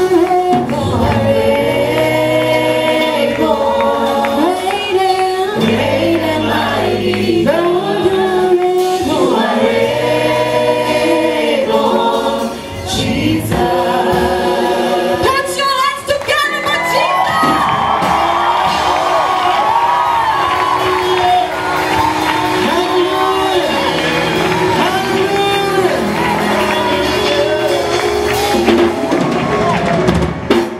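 Live gospel worship music: several male and female singers on microphones sing together, backed by a band with drums and bass. About halfway through the sound grows fuller and busier.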